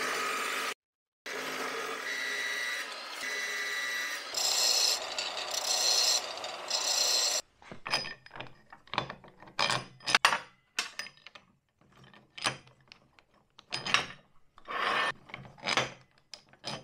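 A power tool runs on metal for about seven seconds with a steady hiss and high ringing tones, cut once by a short gap. Then come short, irregular scraping strokes and clinks, consistent with a cast pillow-block bearing housing being sanded by hand to loosen a tight bearing fit.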